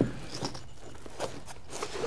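Paintball barrel pieces being slid into the fabric sleeves of a padded marker bag: faint rustling of nylon with a few light clicks.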